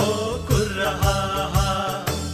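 Sakela dance music: a drum beating about twice a second with cymbals clashing on the beat, and voices chanting a melody over it.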